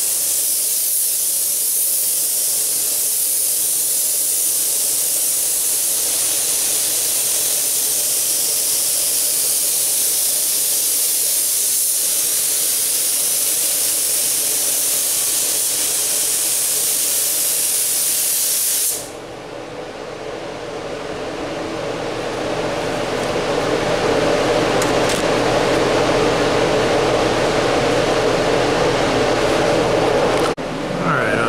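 Compressed-air paint spray gun hissing steadily as it lays basecoat on a car's hood, cutting off suddenly about two-thirds of the way through. A steady machine hum runs underneath and is left on its own once the gun stops.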